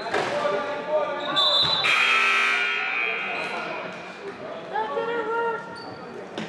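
Basketball gym sounds: players calling out, a short high tone about a second and a half in, then a long, loud buzzer-like tone from the scoreboard horn at about two seconds that fades out.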